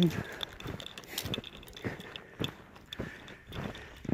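Footsteps crunching through deep snow at a walking pace, a step about every half second or so.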